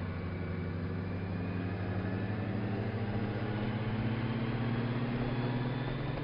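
Touring motorcycle's engine running under way, a steady low hum under road and wind noise. Its pitch and loudness rise gently over the middle seconds as the bike picks up speed onto a straight.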